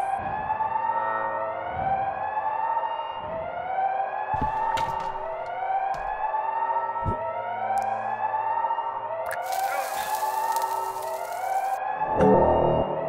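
A siren wailing in a steady cycle, each rise and fall lasting about a second and a half, with a few short knocks and a burst of hiss about nine seconds in that lasts two seconds.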